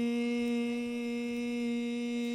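A man holding one steady, unbroken sung note into a handheld microphone, keeping it going on a single breath for as long as he can.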